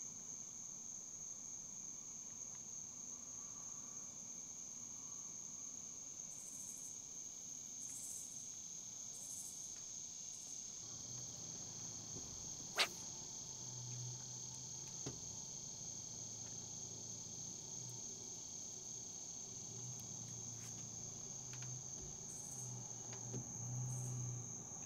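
Steady, high-pitched chorus of crickets. A single sharp click comes about 13 seconds in, and a faint low hum joins from about 11 seconds on.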